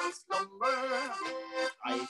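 A man singing a slow Irish ballad over a button accordion (bosca ceoil). Near the middle he holds a note that wavers in vibrato, with short breaks between phrases.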